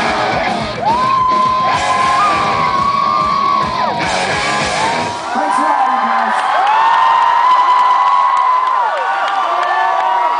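A live rock band plays the last bars of a song on electric guitar and drums while the crowd screams. The band stops about five seconds in, leaving the crowd cheering and whooping.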